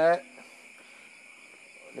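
Steady chirring of night insects, heard as a constant high-pitched background. A man's voice ends just at the start.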